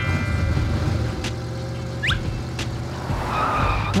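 Cartoon car engine sound effect running steadily as the car drives off, with a short rising whistle about two seconds in.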